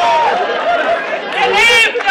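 Several voices talking excitedly over one another, with one high voice loudest shortly before the end.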